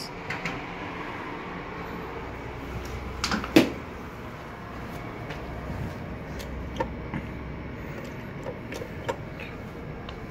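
Hydraulic elevator's sliding doors closing, ending in a sharp thump about three and a half seconds in, over a steady low hum, with a few light clicks later on.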